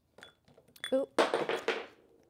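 Clear plastic drinking cups being handled: a few light clicks, then a loud crackling clatter of the thin plastic for about half a second past the middle.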